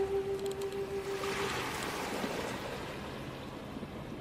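Outro music with a whoosh effect: a held note fades out about a second and a half in while a rushing whoosh swells and dies away, the whole sound growing quieter.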